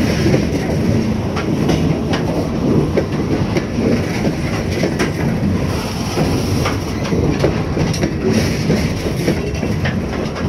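Freight train of CSX open-top coal cars rolling past, steel wheels rumbling steadily on the rails. Sharp clicks come every second or so as the wheels cross rail joints.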